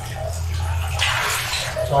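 Hot-spring bath water sloshing and splashing as a bather moves his arms in it, loudest about a second in, over a steady low hum.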